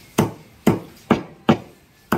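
Chinese cleaver chopping raw chicken on a thick wooden log block: four sharp chops, about two a second.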